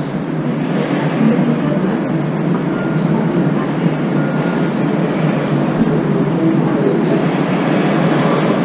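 Steady, even rushing background noise of the outdoor surroundings, like distant traffic or wind, with no distinct events.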